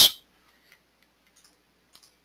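Three faint computer mouse clicks, spread over about a second and a half.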